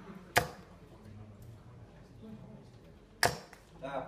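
Two steel-tip darts striking a Winmau Blade 4 bristle dartboard, each landing with a single sharp thud, about three seconds apart.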